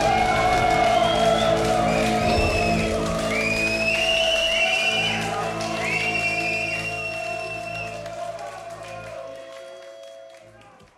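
A punk rock band's final chord ringing out live on electric guitars and bass, with high tones sliding up and holding above it. The low end drops away about halfway through, and the whole sound fades out over the last few seconds.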